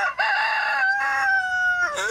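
Rooster crowing: a short opening note, then one long held call that drops in pitch at the end.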